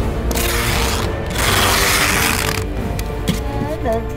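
Packing tape pulled off a handheld tape gun to seal a cardboard box: two long tape rips, the second longer and louder. A couple of small clicks follow near the end, over background music.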